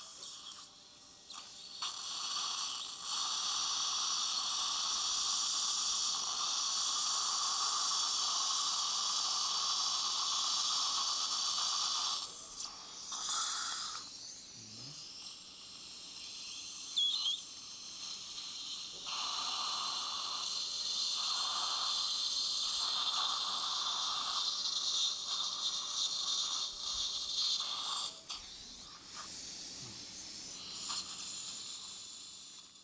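Implant drill in a surgical contra-angle handpiece cutting the implant osteotomy in lower molar bone under saline irrigation and suction, making a steady hissing noise. It starts about two seconds in, stops for several seconds around the middle, and runs again until near the end.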